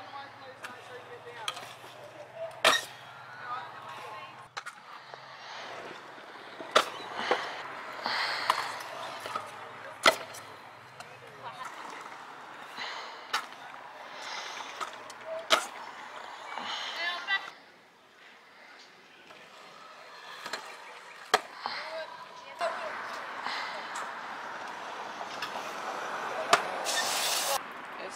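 Stunt scooter wheels rolling on a concrete skate park, with sharp clacks of the scooter hitting and landing on the concrete several times, and voices in the background.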